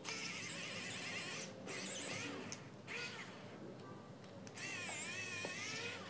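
Electric precision screwdriver whirring in four bursts of a high, wavering whine as it backs out the small screws holding a Bluetooth speaker's control board.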